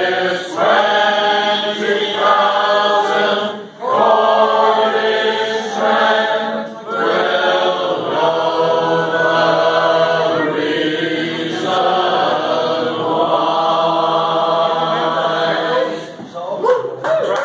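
A pub crowd of men and women singing together unaccompanied in harmony. The voices sing in long phrases with brief breaks for breath, and the last phrase is held long before it ends.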